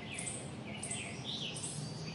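Small birds chirping, short quick calls a few times a second, over a steady low hum.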